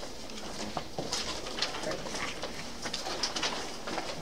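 Papers rustling and being handled at a meeting table: soft, scattered rustles and light taps over a quiet room background.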